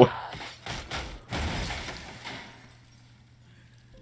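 Sound effects from an animated fight scene: a few knocks and noisy scrapes that fade out over the first two and a half seconds, then near silence with a faint low hum.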